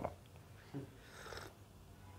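A quiet pause between spoken phrases: low room tone with a faint, soft breath-like sound about a second in.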